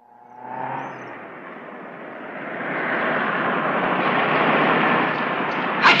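Volkswagen Beetle driven fast off the road across fields: engine and rolling noise build steadily in loudness over several seconds, with a sharp crack near the end.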